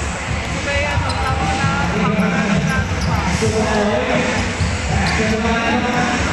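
A basketball dribbled on a hardwood court, with continuous crowd chatter and voices echoing around a large indoor arena.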